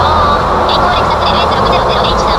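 Toyota Alphard minivan's engine and road noise heard from inside the cabin while driving hard through a tunnel, a steady loud rush with a low hum, echoing off the tunnel walls.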